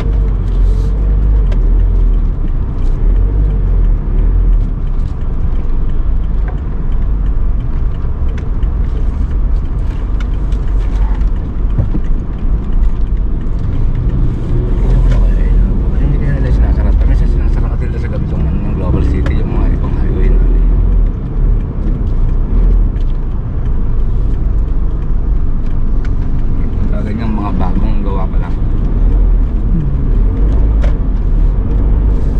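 Steady low rumble of a car driving, engine and tyre noise heard from inside the cabin, with muffled voices at times around the middle and near the end.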